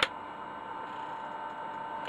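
Faint steady whine with a thin tone near 1 kHz over light hiss, from the freshly powered floppy disk drive and PC power supply of a bare computer board.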